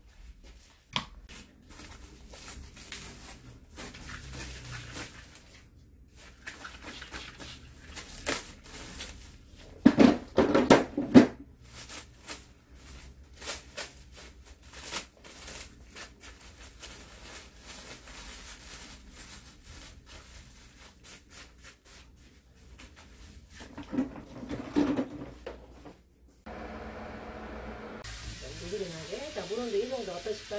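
Close-up salon handling sounds: a dye brush working colour into wet hair and plastic film crinkling as the dyed hair is wrapped. Near the end this gives way to steady running water from a shampoo-bowl sprayer.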